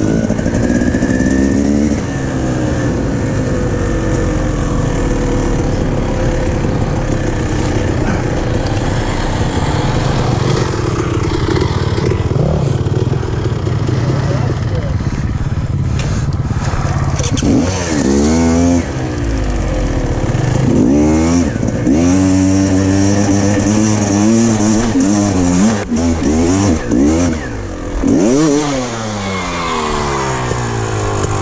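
Dirt bike engines running: a fairly steady engine note in the first half, then several revs rising and falling sharply in pitch in the second half.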